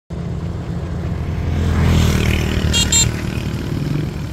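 An engine running steadily with a low rumble, with two short high-pitched sounds about three seconds in.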